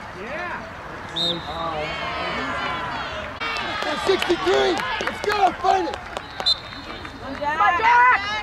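Many voices of players and sideline spectators shouting and calling out over one another. Two short, high, steady whistle tones come through about a second in and again past six seconds.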